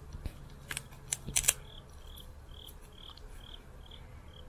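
A cricket chirping outdoors in short, evenly spaced high chirps, about two a second, starting about two seconds in. Before that, a few sharp clicks and crackles.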